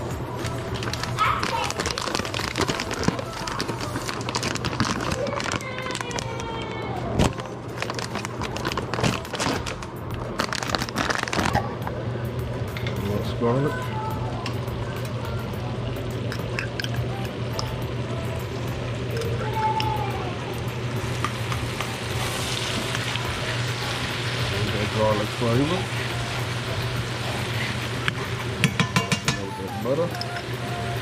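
Stovetop cooking: scattered clinks and knocks of utensils and pans, then a hiss of butter sizzling in a skillet as minced garlic is spooned in, over a steady low hum.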